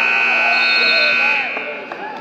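Gym scoreboard buzzer sounding one long, steady, high tone that cuts off about a second and a half in, over faint crowd voices.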